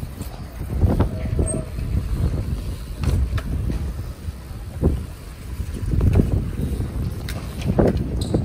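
Wind noise on the microphone, a low rumble swelling and falling in gusts, with a few faint clicks.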